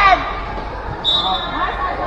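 Futsal players and spectators shouting during play, with a ball thudding on the concrete court and a brief high whistle about a second in.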